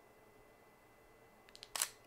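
Sony a6000 camera's shutter firing once at a slow 1/8-second shutter speed, a short cluster of sharp clicks about a second and a half in.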